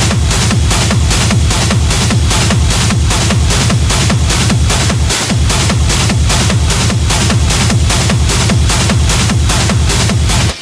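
Hard techno mix with a fast, steady kick drum on every beat.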